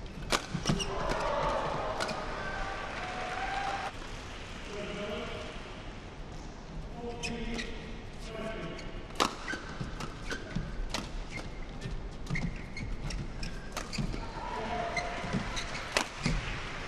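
Badminton rackets striking a shuttlecock: a string of sharp, irregularly spaced cracks through a rally, with voices in the hall.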